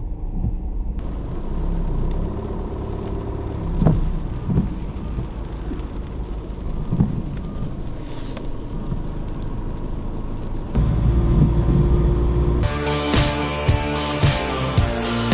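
Car cabin road noise and low engine rumble while creeping along in slow traffic, with a few short knocks. The rumble grows louder about eleven seconds in, and background music with a steady beat comes in near the end.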